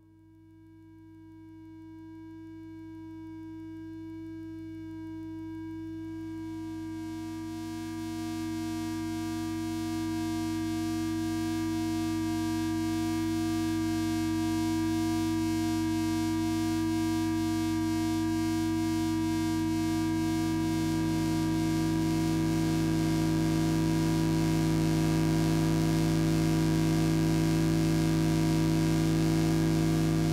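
1964 Synket analogue synthesizer playing a slowly swelling drone of steady held tones, with more tones layering in about six seconds and again about twenty seconds in.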